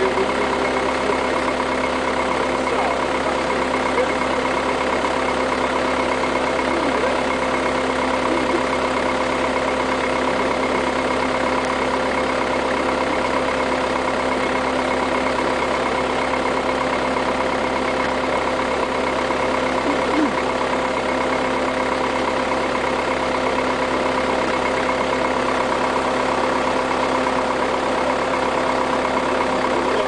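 A crane's engine idling steadily, an unchanging drone with a constant hum.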